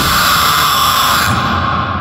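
Closing tail of a dubstep/electronic track: a sustained noisy wash, brightest in the upper midrange, that loses its top end a little past halfway and begins to fade out.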